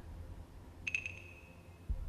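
Electronic beep sound effect: a few quick ticks about a second in, then one high tone held for just under a second that fades out, over a low steady background hum.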